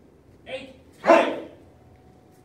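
Martial-arts students shouting a sharp kiai, "Hey!", as they punch: a short call about half a second in, then the loudest shout about a second in.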